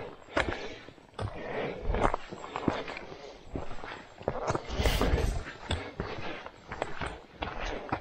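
Footsteps crunching and scuffing on a rocky forest trail, with sharp taps of a trekking pole's tip on stone, in an uneven walking rhythm. A louder low rumble comes about five seconds in.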